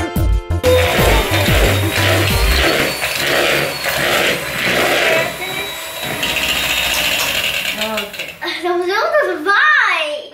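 Electric hand mixer running with its beaters in cake batter, a dense whirring noise that swells and fades in pulses. Background music cuts off in the first second, and a voice comes in near the end.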